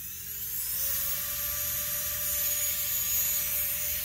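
High-speed rotary carving handpiece with a taper burr fitted, switched on and spinning up with a rising whine that levels off about a second in, then running free at a steady high pitch.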